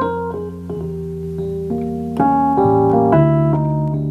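Digital stage piano playing a slow passage: held low bass notes under chords and single melody notes, with fuller chords struck a little past two seconds in and again about a second later.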